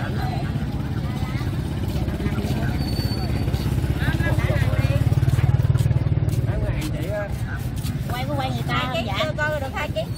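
A motorbike engine running close by, swelling louder around the middle and easing off again, under scattered market chatter.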